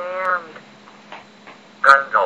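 Microsoft Mary text-to-speech voice reading a single dictionary word, a short synthetic utterance of about half a second at the start. Near the end comes a sharp click, and the next word begins right after it.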